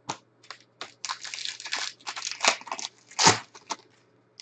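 Foil wrapper of a Panini Prizm football card pack being torn open and crinkled: a few sharp crackles, then a dense run of crinkling from about a second in, with two louder crinkles near the end.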